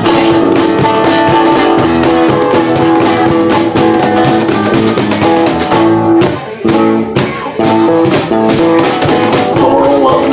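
Live acoustic band playing an instrumental break: a harmonica holding long notes over strummed acoustic guitar, electric bass and cajon. The band briefly drops away about six and a half seconds in, then comes back.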